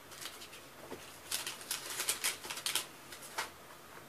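Handling noise: a quick run of sharp clicks and crackles in the middle, with a few single clicks before and after, as something is handled close to the microphone.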